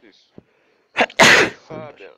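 A person sneezing once: a sharp catch about a second in, then a loud hissing burst.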